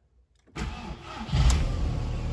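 An Audi A3's engine is started with the key: the starter cranks from about half a second in, the engine catches after under a second, and it settles into a steady idle. Heard from inside the car's cabin.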